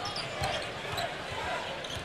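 A basketball being dribbled on a hardwood court, a dull thump about twice a second, under faint arena voices.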